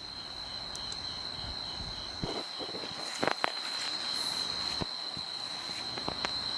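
Night insects, crickets, trilling in one steady high tone, with a second insect chirping about three times a second just below it. A few faint clicks a little past halfway through.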